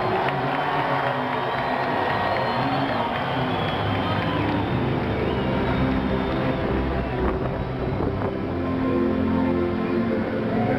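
Music from a tribute video playing over a stadium's public-address speakers, with a dense, steady rumble of background noise underneath.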